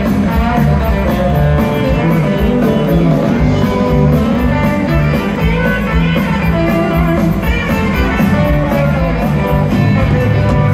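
Live country-rock band playing loud and amplified, with electric guitars over drums and bass.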